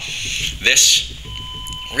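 A single steady electronic beep, a pure tone lasting well under a second, in the second half.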